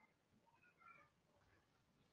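Near silence: room tone, with a few very faint, short high-pitched sounds about half a second to a second in.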